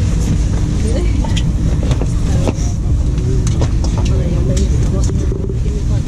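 Interior noise of an ETR 460 Pendolino electric train pulling out of a station at low speed: a steady, loud low rumble from the running gear, with scattered short clicks and knocks.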